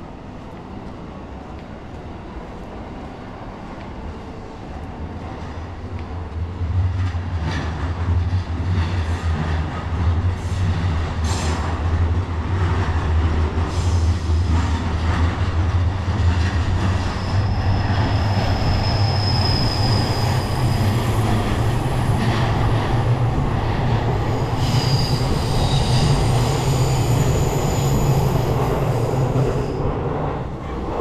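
A train passing close by. Its low rumble builds over the first several seconds, then runs loud with knocks of wheels over rail joints. High wheel squeals come twice in the second half.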